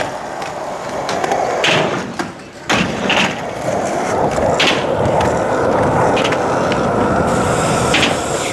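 Skateboard wheels rolling over a concrete skatepark surface, with several sharp clacks of the board. The rolling gets louder about three seconds in and stays steady to the end.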